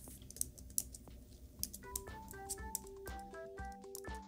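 Light, scattered clicks like a computer keyboard being typed on. About two seconds in, soft background music with a gentle melody of held notes comes in under them.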